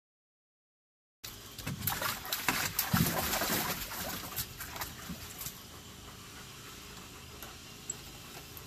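Water splashing and sloshing in a plastic kiddie pool as a German Shepherd steps into it. A cluster of splashes starts about a second in and peaks around three seconds, then dies down to a faint background hiss.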